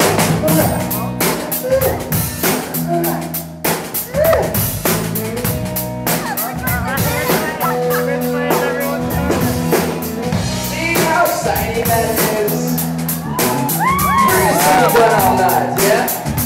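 Live pop-rock band playing: a steady drum-kit beat under acoustic and electric guitars, with voices singing along. Near the end, several voices rise and fall in pitch at once.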